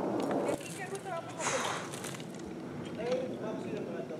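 Faint, distant voices of people talking, with a brief rustle about one and a half seconds in.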